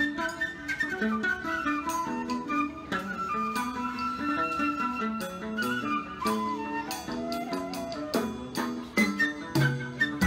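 Traditional instrumental music: a melody with sliding notes over plucked string notes and a stepping lower line.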